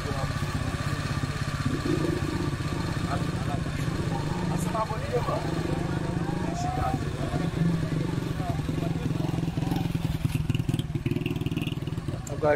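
Small motorcycle engine idling steadily, with people talking faintly in the background.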